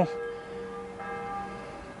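Church bells ringing, their tones lingering, with a fresh strike about a second in.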